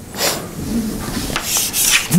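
Chalk scraping on a blackboard as a long curved brace is drawn, in two louder strokes.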